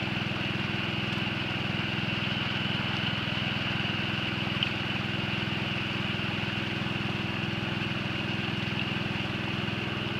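Small gasoline engine of a water pump running steadily at a constant speed, feeding a high banker, with water rushing down the high banker's sluice. One short click about four and a half seconds in.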